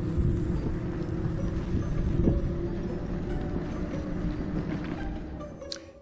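Steady low rumble of an e-bike rolling along a paved trail, tyre and wind noise on the bike-mounted microphone, with a faint steady hum over it; it fades down near the end.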